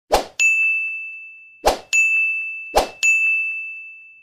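Sound effects of an animated subscribe end screen: three times over, a quick swish followed by a bright, high bell-like ding that rings and fades away, with a few faint ticks in between.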